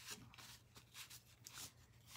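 Faint, irregular rubbing of a soft wipe over a chalk-painted wooden plaque, wiping dark wax off so that it looks weathered.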